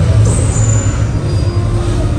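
Loud, deep rumbling sound effects from a theme-park special-effects show, with brief high metallic squeals in the first second, as gas-flame effects flare up on the set.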